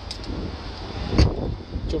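A 2024 BMW 1 Series rear passenger door being shut, a single solid thump about a second in, over wind noise on the microphone.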